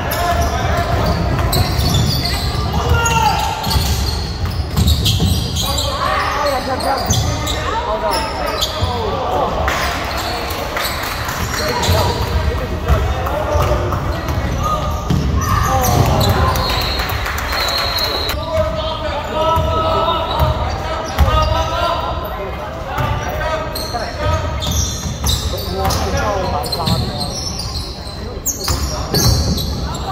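Indoor basketball game: a ball bouncing on a hardwood gym floor while players and spectators call out, all echoing in a large gymnasium.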